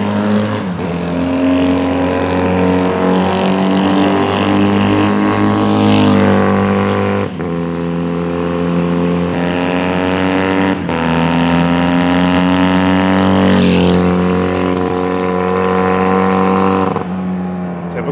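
Honda CD175 parallel-twin four-stroke motorcycle engine running through dual megaphone mufflers as the bike rides by on the road. The engine note climbs steadily and drops sharply a few times. It swells loudest as the bike passes close, around a third of the way in and again near the end.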